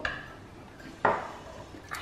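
Two short clinks of cutlery on tableware, about a second apart, each with a brief ring.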